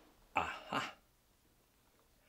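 A man clearing his throat: two quick bursts close together, about half a second in.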